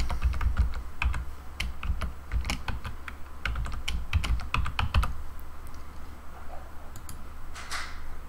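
Computer keyboard being typed on, a quick run of keystrokes for about five seconds that then stops, with a couple of clicks near the end.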